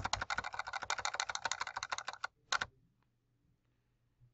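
Typing on a computer keyboard: a quick run of keystrokes for about two seconds, then two more keystrokes.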